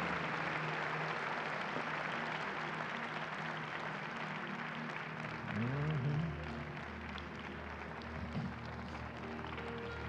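Slow altar-call music of sustained chords playing under congregation applause, which thins out over the first half; about halfway through a low note slides upward.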